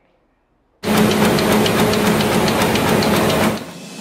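Broadcast intro transition sound effect: after a short silence, a loud burst of static-like noise with a steady low hum and rapid irregular clicking cuts in about a second in, then drops away just before the theme music.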